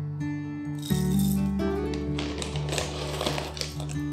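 Whole coffee beans poured into a metal hand coffee grinder, rattling into the hopper in two spells: briefly about a second in, then again from about two seconds until near the end. Background music with held notes plays throughout.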